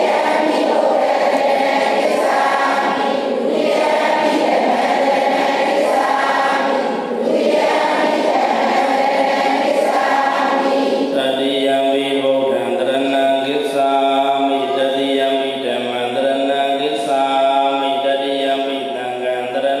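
A group of voices chanting together in unison: Buddhist devotional recitation by a seated congregation. About eleven seconds in, the sound thins to fewer voices with clearer, held pitches.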